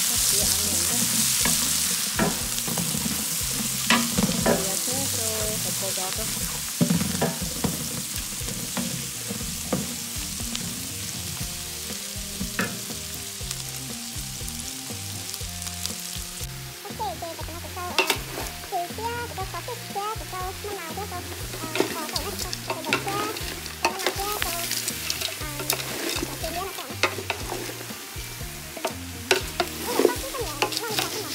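Sliced ginger and onion sizzling in hot oil in a large stainless steel pot, stirred with a wooden spatula that scrapes and knocks against the metal. The sizzle is loudest in the first half and drops off sharply about halfway through, with the stirring clicks going on throughout.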